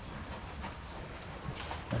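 Faint hoofbeats of a horse trotting on sand arena footing: a few soft, short thuds.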